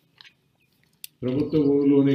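A man speaking into a podium microphone: a short pause with a few faint mouth clicks, then his voice comes back in loudly about a second in.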